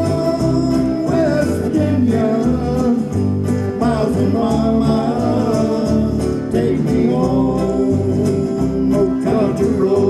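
Live country band playing: electric and acoustic guitars over an electric bass line.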